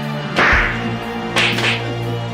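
Open-hand spanks on a person's backside: three sharp slaps, one about half a second in and two in quick succession near the middle, over background music with a steady bass.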